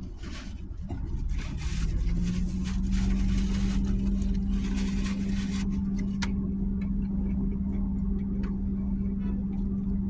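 Handling and rustling noises inside a car cabin, busiest in the first half, over a low rumble. A steady low hum sets in about two seconds in and holds to the end.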